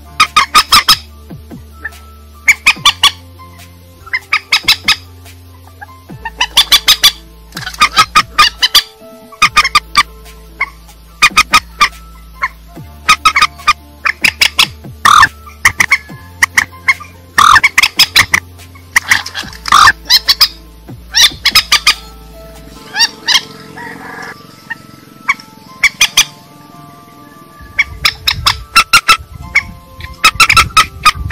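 Harsh, repeated squawking calls of rail-family waterbirds (waterhens and moorhens), loud and coming in clusters every second or two, with a softer stretch of calling about three-quarters of the way through. A music track with low, held chords runs underneath.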